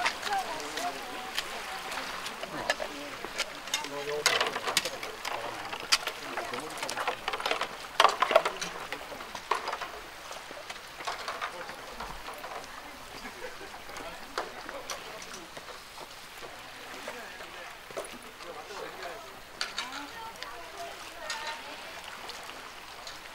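Indistinct chatter of people near and far over a steady wash of sea against the rocks, with scattered sharp clicks and scuffs of footsteps on the rock.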